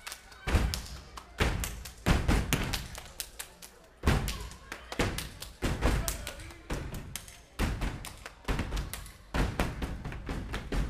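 A step team stepping: hard rhythmic stomps on the stage floor mixed with claps, coming in quick clusters about once a second with short gaps between.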